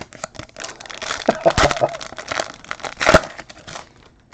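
A foil 2016 Panini Phoenix football card pack being torn open and crinkled in the hands: a dense crackle, with two louder rips about one and a half and three seconds in.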